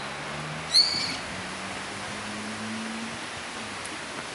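A bird gives one short, high, shrill call about a second in, over steady outdoor background noise.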